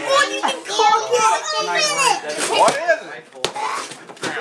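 Excited children's voices, high-pitched chatter and squeals overlapping, with one sharp knock about three and a half seconds in.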